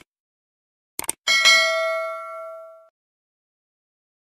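Subscribe-button animation sound effects: a quick double click, then a bright bell ding that rings out and fades over about a second and a half.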